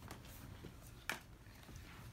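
Quiet room with faint handling of paper trading cards and one short, sharp click about a second in.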